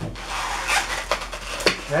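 Hands rubbing and gripping an inflated white latex modelling balloon, the latex rasping against the skin in a few short rubs.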